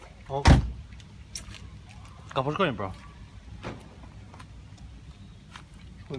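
A car door shuts with a loud, sharp thud about half a second in. A man's voice is heard briefly about two seconds later, with a few light clicks.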